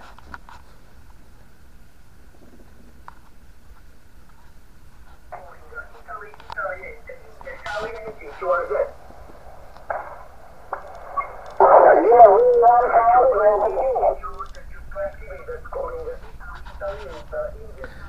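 Portable HF receiver tuned to the 20-metre amateur band at 14.120 MHz, playing through its small speaker. There is faint hiss for the first few seconds, then thin, tinny single-sideband voices of distant stations come through the static, loudest around the middle.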